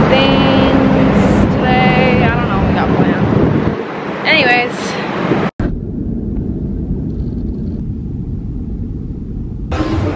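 City street traffic noise with a steady engine hum and voices. After an abrupt cut about halfway through, a duller low rumble of a subway station takes over.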